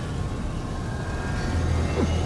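Film soundtrack: a low, steady rumble with a faint musical drone over it, growing louder about one and a half seconds in.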